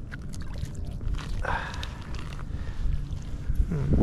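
Wind rumbling on the microphone, with a few faint clicks and a short higher-pitched sound about a second and a half in.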